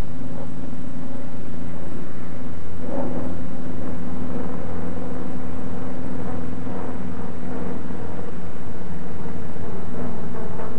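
Radial piston engine of a Grumman F8F Bearcat, a Pratt & Whitney R-2800 Double Wasp, droning steadily in flight.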